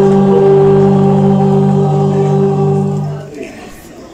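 A school choir sings Polish songs and holds one long chord, which stops about three seconds in.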